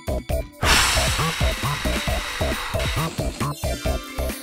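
Children's cartoon music with a bouncy, repeating bass line, and a loud hiss of rushing air laid over it, starting suddenly under a second in and fading out near the end.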